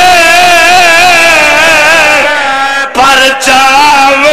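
A man chanting into a microphone in long, drawn-out notes that waver in pitch, loud and amplified. The line breaks off twice briefly about three seconds in and resumes.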